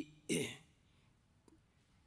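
A man clears his throat once into a microphone, a short rough burst just after the start, followed by a pause of quiet room tone.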